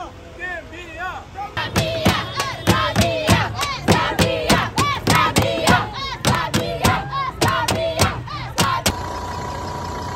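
A crowd chanting and shouting, with a stick beaten on a plastic jerry can at a quick rhythm of about four strikes a second. Near the end it cuts to a steady hum.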